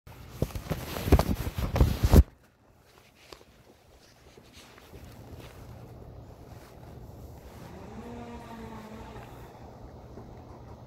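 Loud crackling and buffeting on the phone's microphone for about the first two seconds, then a faint low steady hum. A short pitched sound rises and falls near the end.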